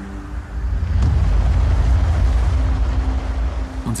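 A deep, steady rumble that swells up about a second in, under soft held music notes.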